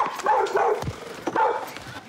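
A dog barking a few times in short, loud bursts.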